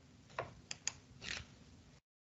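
A few faint, sharp clicks in quick succession, then a soft rustling tap about a second and a quarter in, from the handling of a computer while a screen snip is taken and pasted.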